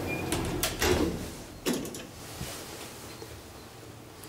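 Thyssen traction elevator's doors opening at a landing: a quick run of mechanical clicks and knocks from the door and latch in the first two seconds, the loudest about a second in and a last knock a little later.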